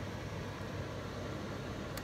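Steady background hiss of room noise with no distinct event, ending in a faint click.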